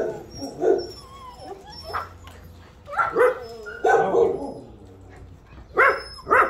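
Puppies yelping, whining and barking in a string of short calls, excited and impatient as food is set out for them.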